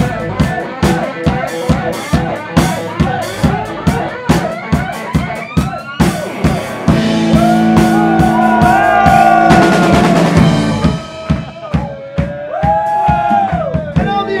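Live rock band playing an instrumental groove: a drum kit keeps a steady beat while an electric guitar plays a lead with sliding, gliding notes. About halfway through the band swells into a fuller, held chord for a few seconds before the beat carries on.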